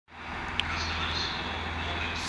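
Diesel multiple unit standing at the platform with its engines idling: a steady low hum under an even hiss, with a short faint click about half a second in.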